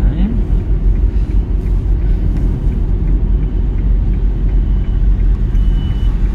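Steady low rumble of a small Hyundai car's engine and tyres on the road, heard from inside the cabin while driving.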